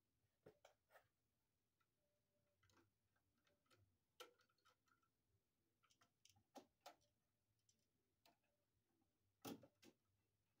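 Faint, irregular small clicks and taps of a screwdriver, pliers and copper ground wire being worked at a GFCI receptacle's green ground screw, the loudest pair near the end.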